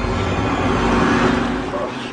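A loud rushing roar that swells to a peak just past a second in and then fades.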